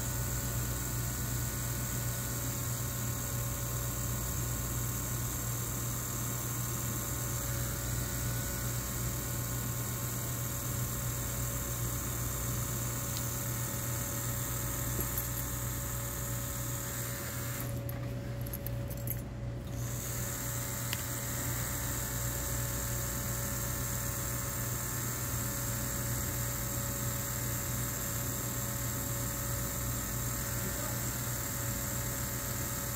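Electric tattoo machine buzzing steadily as the needle lines a tattoo into skin.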